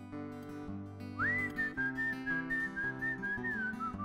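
A man whistling a melody into a microphone over his own acoustic guitar. The whistle comes in about a second in with a quick upward sweep to a high note, holds up there with small steps, and steps down near the end, while the guitar keeps up a steady picked accompaniment.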